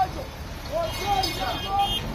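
A man's voice speaking in short phrases into a microphone, played through a portable loudspeaker, over street noise. A faint steady high tone sounds in the second half.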